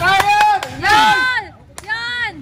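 Men yelling and whooping in long, high-pitched cries: two drawn-out shouts, with a few sharp cracks around them.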